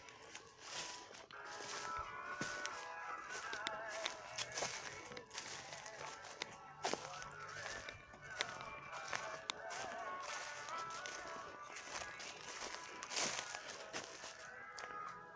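Footsteps crunching through dry fallen leaves and mulch at a walking pace, a run of short crisp crackles.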